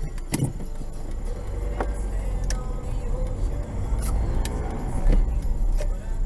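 Car driving slowly, heard from inside the cabin: a steady low engine and road rumble, with about seven sharp ticks scattered through it.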